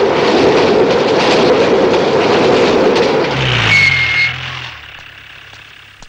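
A car engine running loudly as the car pulls away, fading out over the last two seconds, with a short high whine near the middle.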